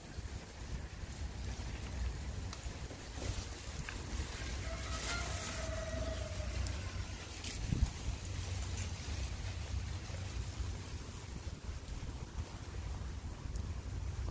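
Wind buffeting the microphone as a steady low rumble, with a few brief rustling noises.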